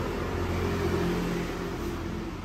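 A motor vehicle's engine running steadily over background noise, its pitch rising slightly about half a second in.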